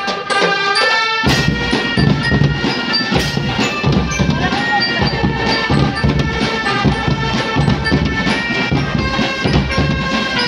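Marching drum band playing: snare, tenor and bass drums with cymbals beating a rhythm under a high, bright melody. The drums stop for about a second at the start and then come back in.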